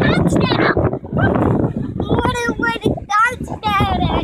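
A young child's high-pitched voice squealing and calling out in short bursts in the second half, over wind rushing on the microphone.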